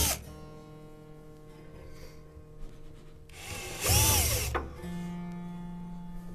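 Cordless drill boring through a piano soundboard: a short run ends right at the start, and a second burst of about a second comes just past halfway, its whine rising, holding, then dropping as it stops. Between and after the bursts the piano's strings ring on with sustained steady tones.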